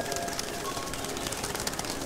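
Birds calling, with a few faint steady tones in the background.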